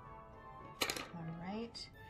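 A quiet stretch just after background Christmas music cuts off, with faint lingering music tones. About a second in comes a short hiss, then a woman's quiet, rising murmur.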